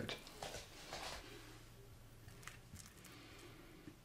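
Faint room tone with a steady low hum, and a few soft handling sounds in the first second or so.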